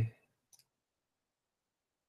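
The tail of a man's spoken word, then one faint, short click about half a second in, followed by near silence.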